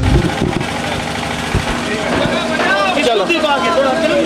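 A man's voice speaking over a steady background rumble and hum from an open-air gathering, with a burst of low microphone rumble at the very start; the speech becomes clear about halfway through.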